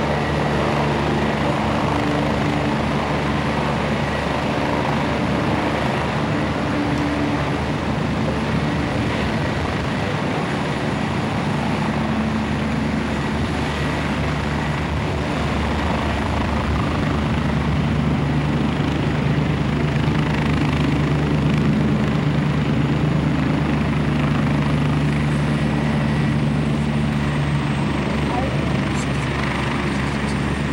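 Medical helicopter's rotor and turbine engines running steadily as it lands. A high turbine whine drops slightly in pitch near the end.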